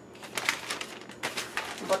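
Paper sale flyer rustling and crinkling as it is handled and moved aside, a quick run of crackly rustles.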